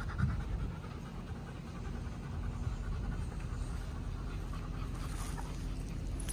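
A dog panting, with wind rumbling on the microphone.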